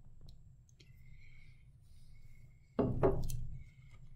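Quiet handling of a glass jar with faint clicks, then, about three seconds in, a louder short bump and rustle as the jar is set down upright on the table.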